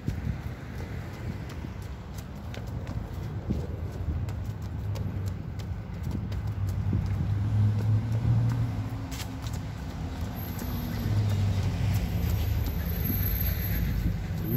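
Running footsteps on a concrete sidewalk, a rapid run of short slaps, with a low vehicle hum swelling in the background about halfway through and again near the end.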